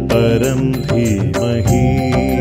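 Hindu devotional song: a chanted vocal line over instrumental accompaniment and percussion.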